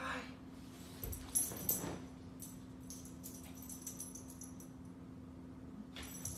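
A small dog moving across a hardwood floor to a dropped blanket, with a few short knocks and rustles about a second in, over a faint steady hum.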